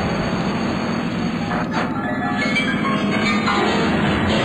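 Electroacoustic tape music: a dense, continuous texture of noise and several held tones, with a brief sweeping sound about two seconds in.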